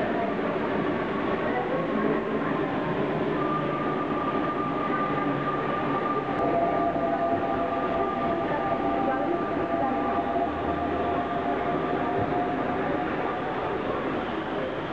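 Commuter train at a station platform: a steady rumble, with two high, even whining tones that come in a few seconds in and hold for several seconds.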